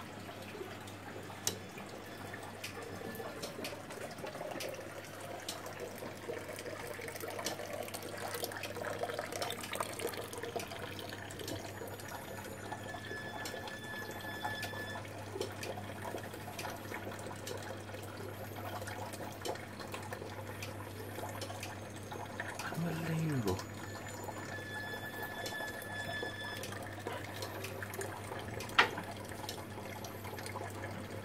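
Water trickling and splashing in a mechanical nativity diorama's miniature fountains and streams, over a steady low hum from its works. Faint clicks run through it, a short high tone sounds twice, and one sharp click comes near the end.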